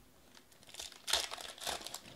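Foil wrapper of a Panini Prizm Draft football card pack crinkling as it is picked up and pulled open by hand, in a quick run of crackles that starts about half a second in.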